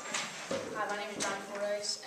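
Footsteps on a hard wooden floor as a cellist walks out carrying his cello, with indistinct speech in the room.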